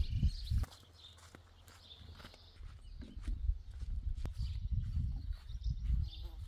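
Outdoor garden ambience: small birds chirping in the background over irregular low thumps and rumbling. The thumps are loudest in the first half-second and come back in the second half.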